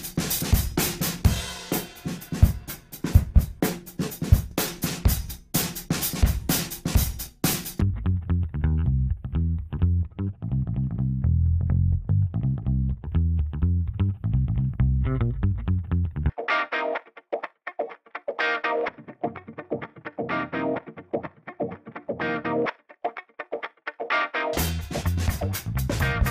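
Loops played one part at a time: a drum-kit loop for about the first eight seconds, then a bass line on its own, then a guitar part on its own for the last third. Each part is played with Softube Console 1 channel processing switched off and then on, to compare the dry and processed sound.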